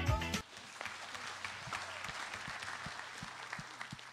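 Loud music cuts off abruptly just under half a second in, followed by a congregation applauding, the clapping thinning out toward the end.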